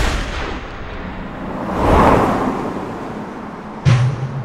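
A sharp gunshot crack at the very start, then a rumbling swell that builds and fades, peaking about halfway through, and a second heavy hit near the end that leaves a deep booming tone like a drum.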